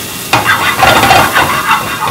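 Diced red and green peppers sizzling in a hot frying pan on a gas burner, with a wooden spoon stirring and scraping them across the pan. The sound gets louder suddenly about a third of a second in.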